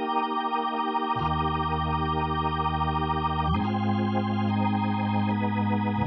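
Hammond B3-style organ voice on a Nord Stage 3 keyboard, with extra drawbars pulled out for a fuller, beefier 'all bars' tone. It holds sustained chords, with a low bass note joining about a second in and a change of chord about halfway through.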